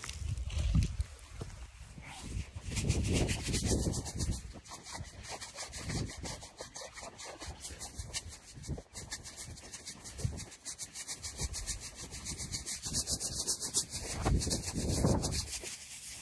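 Footsteps through tall dry grass: stems crunching and swishing against legs and clothing at a walking pace, with soft thuds of footfalls.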